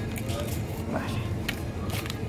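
Cardboard pasta pots being handled and lifted off a shop shelf: a few light knocks and rustles over a steady low hum.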